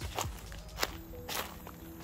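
Footsteps on dry leaf litter: three steps about half a second apart.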